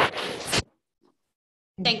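Scratchy rustling of a microphone being handled, with small clicks, cutting off abruptly about half a second in. Then dead silence until a woman starts speaking near the end.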